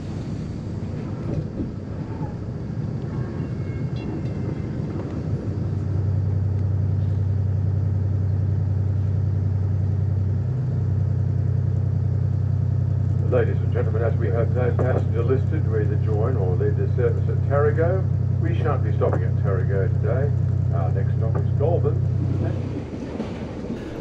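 Deep steady hum of a NSW Xplorer railcar's underfloor diesel engine, heard from inside the carriage. It sets in about a quarter of the way through over the train's running noise. People talk over it in the second half.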